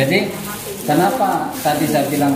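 Indistinct voices of people talking over a steady hiss.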